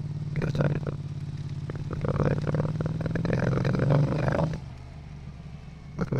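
Motorcycle engine sound run through Adobe Podcast's AI speech enhancement: a steady engine drone turned into garbled, human-like vocal sounds instead of a clean engine note. The voice-like sounds come briefly under a second in and again for a longer stretch from about two seconds, then drop away, leaving the quieter drone near the end.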